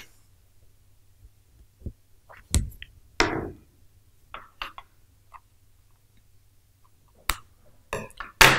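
Handling of a wooden embroidery hoop with cloth stretched in it: a knock and a short rustle of fabric as it is set in place. Scattered light clicks follow, and one sharper click comes near the end.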